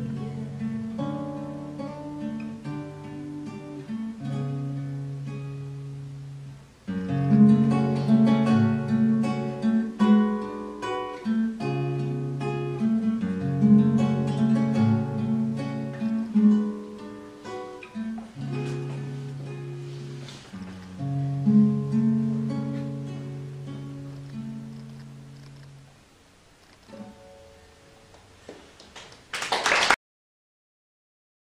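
Nylon-string classical guitar with a capo, played fingerstyle in an instrumental passage of picked notes over bass notes, louder from about seven seconds in and dying away near the end. A brief loud noise comes at the very end.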